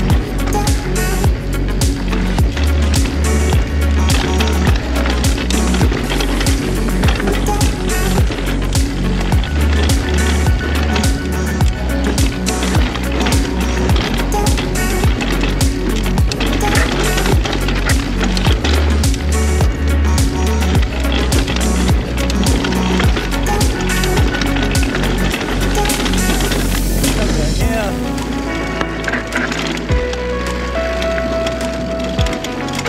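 Background music with a heavy bass beat over the steady rattle and tyre noise of a full-suspension e-mountain bike running down a dry dirt trail. The music's low end changes near the end.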